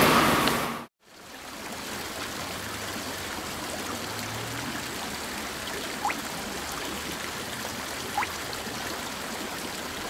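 Steady rushing of flowing water, fading in after a brief stretch of room noise that cuts off within the first second, with two short rising plinks like water drops about six and eight seconds in.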